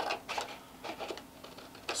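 Scissors snipping through a printed paper sheet, a few short, separate cuts along a cut line.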